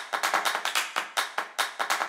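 A rapid, even series of sharp percussive hits, about six a second, with no tune over them; pitched music comes in just after.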